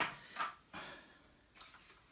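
A few soft rustles and light knocks from a person moving close to the microphone, with short scuffs and clothing brushing.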